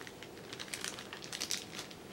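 Irregular crinkling of packaging being handled: a clear plastic bag and crumpled brown kraft packing paper. The crackles come thickest from about half a second in.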